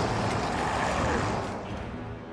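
Heavy rain with a massed roar from an army of Uruk-hai warriors, swelling and then fading over about a second and a half.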